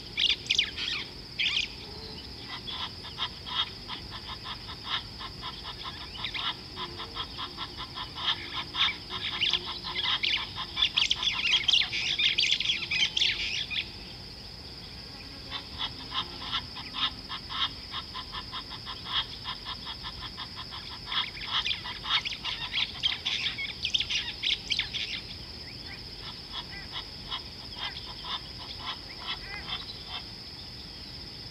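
Wild birds calling in fast, chattering bouts, dense until about halfway through, then again for some ten seconds and sparser near the end, over a steady high-pitched hum.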